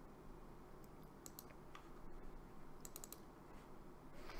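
A few faint computer keyboard keystrokes and clicks in two short clusters, about a second in and near the end, over a low steady room hum.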